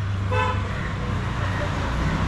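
A vehicle horn gives one short toot about a third of a second in, over a steady low hum of road traffic.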